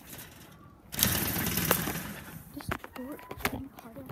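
A rapid flurry of hard knocks on a door, starting about a second in and lasting over a second, followed by a few scattered single thumps.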